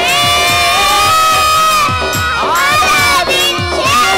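Two children singing a Telugu Christian song into microphones over a backing track with a steady beat. They hold one long note for about two seconds, then sing a second phrase that rises and is held to near the end.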